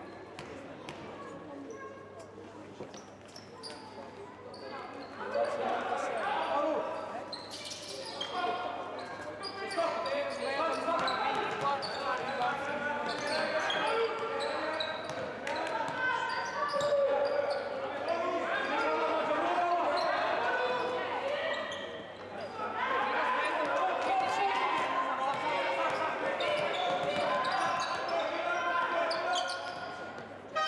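A basketball bouncing on an indoor court under players and coaches shouting, which echoes in a large hall. The shouting gets loud and almost continuous from about five seconds in.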